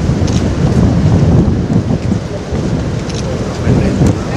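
Wind buffeting an outdoor microphone: a loud, continuous low rumble.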